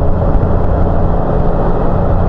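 Large touring motorcycle cruising steadily, heard from the rider's seat: an even low engine drone mixed with wind and road noise on the microphone.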